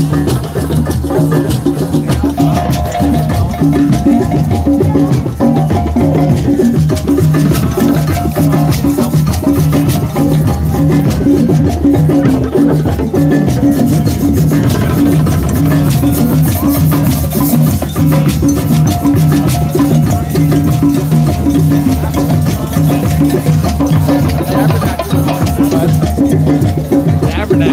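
Drum circle: many drums played together in a dense, steady rhythm, with shaker and clicking percussion mixed in.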